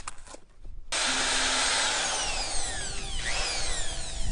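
Electric hand drill with a paddle mixer starting suddenly about a second in and running in a bucket of wet stucco slip (clay, lime, cement and sand), its pitch falling slowly as it works through the mix.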